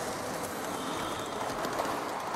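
A steady rushing noise from the film's soundtrack, with no voices or music in it.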